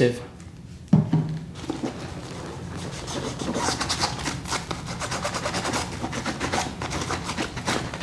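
A cloth rag rubbing and wiping along a backpack's nylon shoulder strap. It is a steady, rapid scratchy rubbing that starts about a second in.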